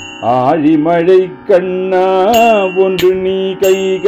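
Carnatic-style Tamil devotional singing: a voice holding and ornamenting long notes over a steady drone, with a few light, sharp strikes.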